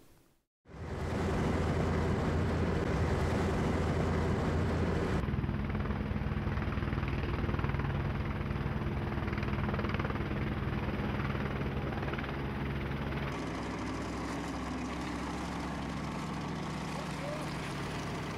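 Boat engine running steadily with a low hum, starting after a moment of silence. Its tone shifts abruptly about five seconds in and again about thirteen seconds in.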